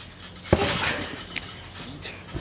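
A jumper landing on a backyard trampoline: one thump of the mat and springs about half a second in, followed by a short rattle that dies away.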